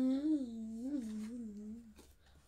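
A girl humming one unbroken, wavering note for about two seconds, its pitch dipping and rising a few times and sliding slowly lower before it stops just before the end.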